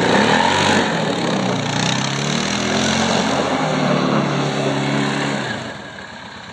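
Arctic Cat TRV 650 H1 ATV's single-cylinder engine revving up under throttle, then running at steady revs for several seconds before easing off near the end.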